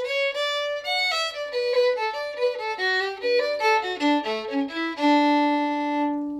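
Solo fiddle playing a quick phrase of a traditional Irish tune: a run of short notes stepping down in pitch, ending on one long held low note near the end.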